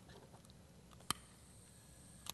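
Faint room tone with one short, sharp click a little past the middle, as a red hand-held burner lighter is picked up off the table.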